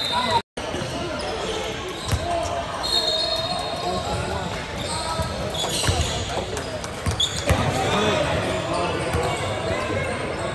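Gym hubbub of overlapping voices from spectators and players in a large echoing hall, with a few sharp basketball bounces on the hardwood court. The sound drops out briefly about half a second in.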